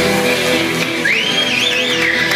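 Live band playing, with guitar prominent. About a second in, a high tone slides up and then wavers up and down.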